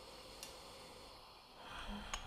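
Faint sniffing as tea aroma is breathed in close to a glass and a gaiwan, swelling slightly near the end, with one light click about half a second in.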